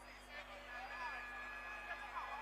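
Stadium crowd background on a football broadcast, with faint voices and a thin steady high tone held through the second half.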